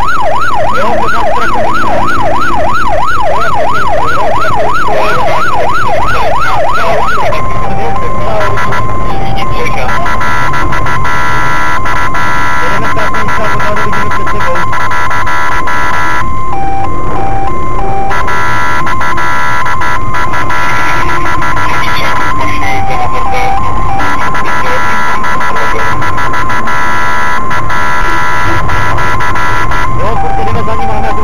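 Police car siren sounding loud, in a rapid up-and-down yelp for the first seven seconds or so, then switching to a steady high tone that drops briefly to a lower note every few seconds. Engine and road rumble from the pursuing car runs underneath.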